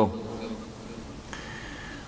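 Low steady room noise in a pause between chanted phrases, with a faint, steady high-pitched hum coming in a little past halfway.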